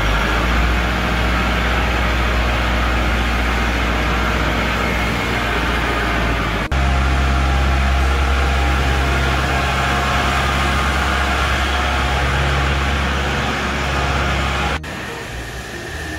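Kubota L5018 tractor's four-cylinder diesel engine running steadily with a deep, even drone. The sound jumps abruptly louder about halfway through and drops away sharply shortly before the end.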